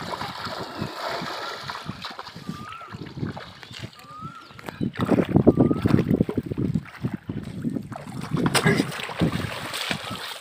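Legs wading and splashing through shallow river water while a fish spear is jabbed down into it. The splashing comes in uneven bursts and is loudest from about five seconds in and again near the end.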